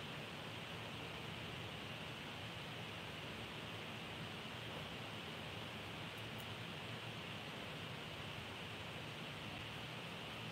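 Steady faint hiss of room tone and microphone noise, with no distinct sound events.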